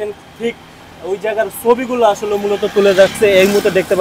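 Speech only: a person talking, with a short pause about a second in.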